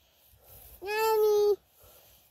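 A high-pitched human voice holding one steady, drawn-out vowel for under a second, starting about a second in.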